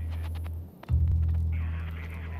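Deep, humming bass drone of film-trailer sound design, in long swells: one fades and drops out just before a second in, then the next hits at once and slowly fades.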